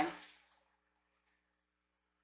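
The end of a spoken word, then near silence with a single faint tick about a second in.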